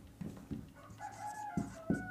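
Marker pen writing on a whiteboard: a few short taps of the tip, then thin, broken squeaks from about halfway through as the strokes of the letters are drawn.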